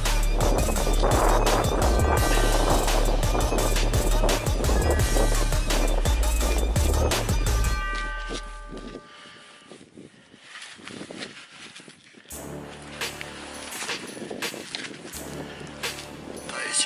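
Wind rumbling on the microphone, with scraping and knocking from close handling and working of the frozen ground, and short steady electronic tones of a metal detector. About halfway through the rumble drops away, leaving faint clicks and tones.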